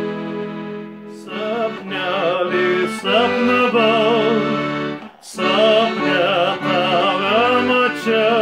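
Piano accordion holding a chord, then a man singing a Lithuanian folk song with vibrato over the accordion from about a second in, with a brief break for breath about five seconds in.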